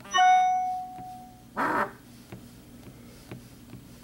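A single bright bell-like chime, struck once and ringing down over about a second and a half, followed a moment later by a short noisy burst.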